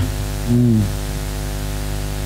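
Steady electrical buzz-hum on the sound system, with a ladder of overtones, holding level throughout. About half a second in, a short low vocal 'mm' sounds briefly.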